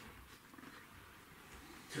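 Faint room tone with a low rumble during a pause in a man's speech; his voice comes back right at the end.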